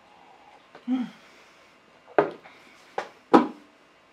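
A short closed-mouth "mm" after a sip of tea, then three sharp knocks in the second half, the loudest first and last: a ceramic mug being set down.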